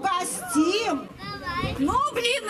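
Speech only: raised, high-pitched voices calling out, with no words the recogniser could catch.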